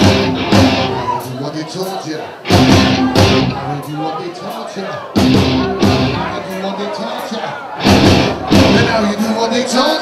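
Live rock band of electric guitars, bass and drums playing, with loud full-band hits about every two and a half seconds that die down in between, four in all.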